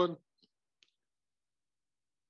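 The end of a spoken word, then two faint short clicks about half a second apart, typical of a computer mouse clicking to advance a slide, on an otherwise silent line.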